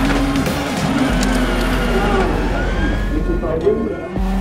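Citroën C3 WRC rally car engine running and revving, with voices mixed over it.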